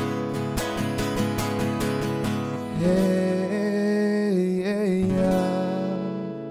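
Man singing live with a strummed acoustic guitar: quick, even strumming at first, then from about three seconds in a long held, wavering sung note over sustained chords. Near the end the strumming stops and the last chord is left ringing.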